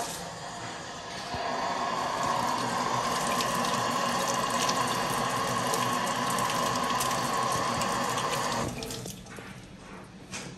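Kitchen tap running into a stainless steel sink while hands are washed under the stream. The water gets louder about a second in and stops abruptly near the end as the tap is shut off.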